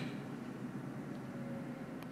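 Steady low background noise with a faint hum: room tone in a pause between spoken phrases.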